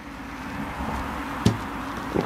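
Beer being gulped down from a glass and a bottle over a steady background hiss, then a single sharp knock about one and a half seconds in as a glass is set down on the table.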